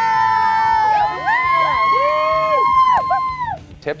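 Several women shrieking and squealing with excitement at once: long, high-pitched overlapping cries that rise and fall, dying away about three and a half seconds in.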